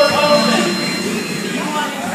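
Several air-resistance rowing machines whirring as people row hard, mixed with voices in a large room.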